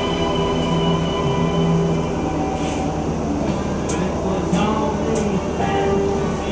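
Car engine heard from inside the cabin, running as the car is driven, its drone holding steady notes that shift in pitch, with brief rising whines about four and a half seconds in and near the end.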